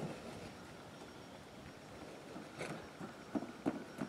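Faint hoofbeats of a loose horse cantering on a sand arena: soft, irregular thuds, a few of them plainer in the second half.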